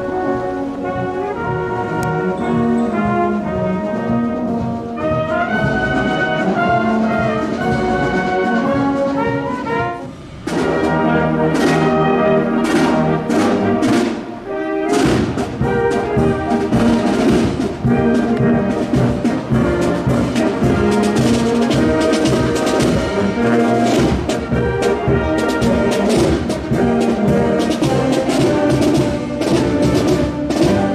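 Brass band playing: slow held chords for about ten seconds, then after a short break a march with drums beating a steady rhythm under the brass.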